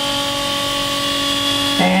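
Raw-water cooling pump for a boat's hydraulic stabilizer system running with a steady, noisy whine. It is a rubber vane impeller pump pushing seawater through the heat exchanger that cools the stabilizer hydraulic oil.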